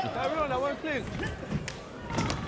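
A man's voice in the first second, then a few sharp thuds as the two karate fighters close in and tie up in a clinch.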